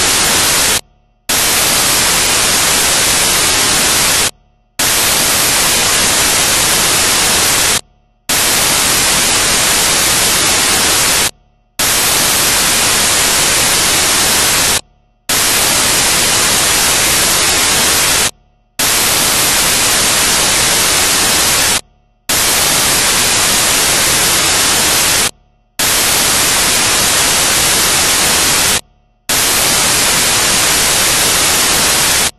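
Loud, steady hiss of static noise, broken about every three and a half seconds by a short gap of silence.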